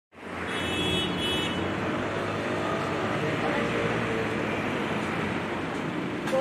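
Steady street ambience of road traffic, with a brief high-pitched tone about half a second in.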